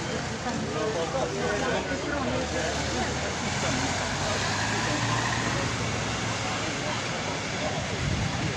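Cars passing slowly on a wet street, their engines a low hum that grows louder around the middle as one goes by close. People are talking in the background.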